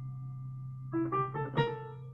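Keyboard notes: a held chord rings on and fades, then about a second in several new notes are struck in quick succession as a chord progression is picked out.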